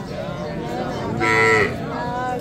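A single short, loud call about a second in, its pitch dipping slightly as it ends, heard over low background voices.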